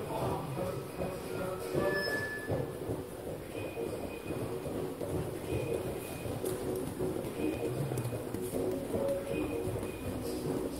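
Background music playing over the irregular footfalls of several people jogging and skipping barefoot on foam gym mats.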